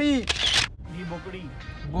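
An edited-in sound effect: a sliding, voice-like musical note ends about a quarter second in. A short, sharp noisy burst like a camera shutter follows and cuts off suddenly, leaving a much quieter background with faint voice or music traces.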